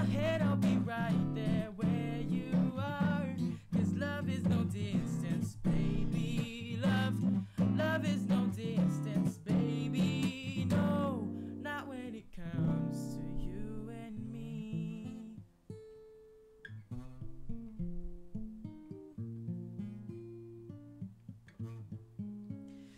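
Washburn acoustic guitar playing chords with a voice singing over it. About halfway through the singing stops and the guitar plays on alone, more quietly.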